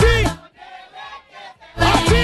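Shouted vocal hype call over a DJ dance-music mix, heard twice: once at the start and again near the end, about two seconds apart, with quieter music between.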